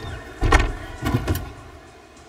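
Thumps from a gymnast's vault entry on a springboard and vault table. There is one heavy thump about half a second in, then a cluster of thumps about a second in as the feet strike the board and the hands hit the table, over arena crowd noise.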